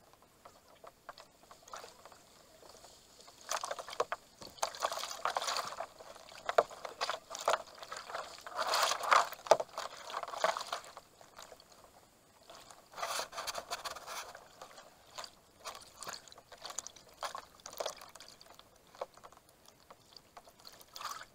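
Water splashing and gurgling against a kayak and its low-mounted camera on a fast, flood-swollen river. It comes in irregular bursts of a second or more with short splashes between them, loudest near the middle.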